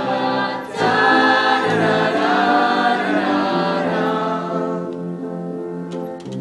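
A stage-musical cast singing together as a choir in harmony, holding long notes. The singing swells about a second in and eases off toward the end.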